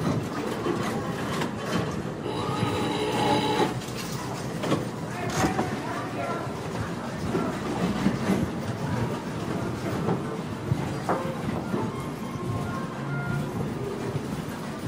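Casino floor ambience: crowd chatter and clatter with electronic slot machine tones. A cluster of steady chiming tones plays about two to four seconds in, and shorter beeps follow later.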